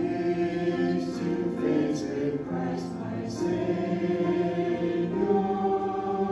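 Mixed church choir of men's and women's voices singing a hymn together, the voices coming in all at once at the very start.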